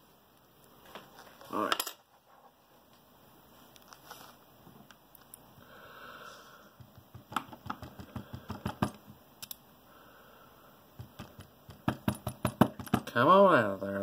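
Light metallic clicks and taps from a brass ASSA Ruko 2 lock cylinder and small tools being handled in a pinning holder, with a quick run of clicks about seven to nine seconds in and again toward the end. A short vocal grunt comes right at the end.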